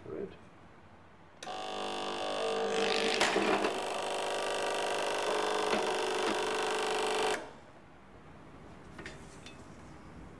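Electric ticker-tape timer buzzing as it marks the tape during a trolley run; it switches on suddenly and cuts off about six seconds later. A couple of knocks come about three seconds in.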